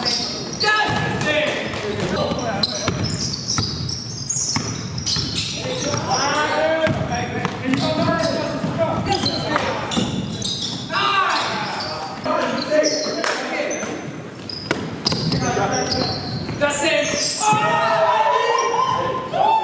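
Basketball bouncing on a hardwood gym floor during play, with players' indistinct shouts and calls echoing in the large gym.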